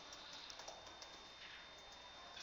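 Faint, scattered keystrokes on a computer keyboard as text is typed slowly, a few separate clicks over a low room hiss.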